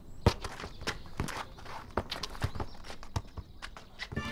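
Footsteps and a football being kicked and bounced on paving stones: irregular sharp knocks and taps of varying loudness, the strongest a short way in.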